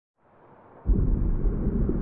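Deep rumbling sound effect of a TV channel's logo ident, starting faintly and then coming in suddenly and loud a little before the halfway point.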